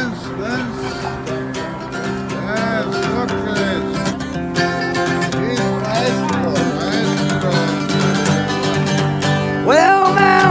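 Acoustic guitar being strummed, its chords ringing on steadily.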